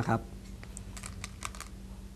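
A man's word ends, then several faint, light clicks follow over about a second.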